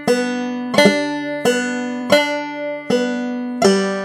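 Five-string banjo played fingerstyle at a slow, even pace: a plucked note about every 0.7 s, each ringing on under the next. This is a drop-thumb exercise, with the thumb dropping between the first and second strings.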